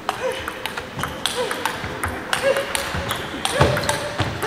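Table tennis rally: the ball clicking off the bats and the table in a quick, irregular series, with short squeaks of shoes on the sports hall floor in between.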